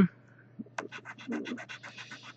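Scratch-off lottery ticket being scratched: a quick run of short scraping strokes rubbing off the coating, starting about half a second in.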